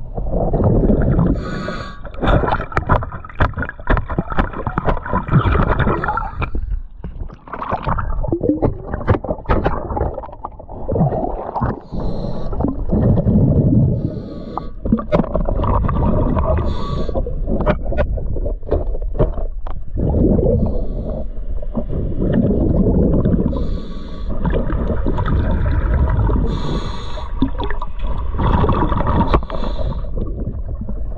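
A diver breathing on a regulator, recorded underwater: a short hiss on each inhale every few seconds, then loud gurgling bursts of exhaled bubbles, with scattered sharp clicks and knocks, thickest in the first twelve seconds or so.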